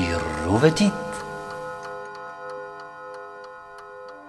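A clock ticking steadily under a held, sustained musical drone, after a brief voice-like sound sliding up and down in pitch in the first second.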